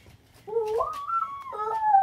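A long howl, starting about half a second in: it rises and wavers in pitch, then holds and slowly sinks.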